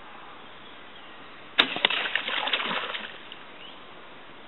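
An aquatic rodent diving into the water from the bank: a sudden sharp splash about one and a half seconds in, then about a second and a half of splashing and sloshing as it goes under.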